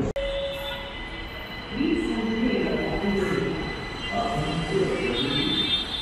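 Gurgaon Rapid Metro train running, a steady high whine over the rumble of the ride.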